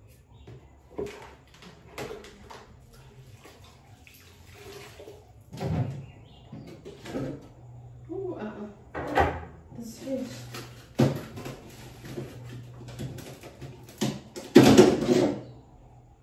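Cleaning inside a small bar fridge by hand: short rubbing and wiping strokes with knocks against its walls, the loudest burst about a second before the end. A person's voice comes in at times.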